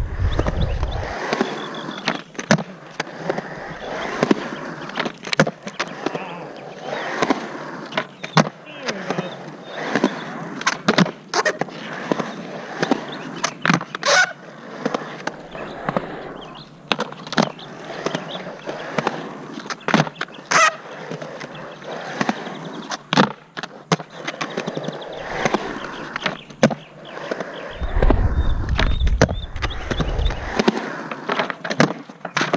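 Skateboard wheels rolling over concrete, with many sharp clacks and knocks from the board and trucks as it is popped, turned and landed on a concrete bank. A louder low rumble comes in at the very start and again near the end.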